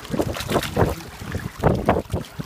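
Wind buffeting the microphone in irregular gusts, over small waves washing against shoreline rocks.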